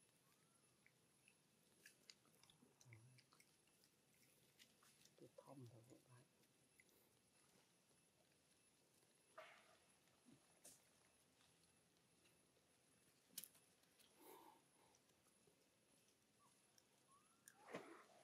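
Near silence, broken only by a few faint scattered clicks and short faint sounds.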